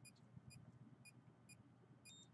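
Near silence, with faint short electronic ticks from a handheld meter, evenly spaced about twice a second.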